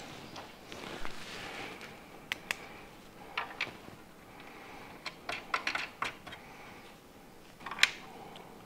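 Irregular light clicks and taps of metal ski brackets being slotted onto a bench-top board mill's sled and locked with clamping knobs, about a dozen sharp clicks with the loudest near the end.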